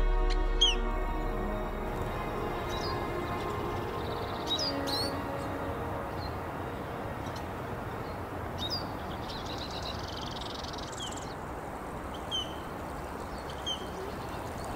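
Birds calling with short, falling chirps every second or two, with one buzzy trill near the end, over a steady rush of flowing river water. Background music fades out in the first few seconds.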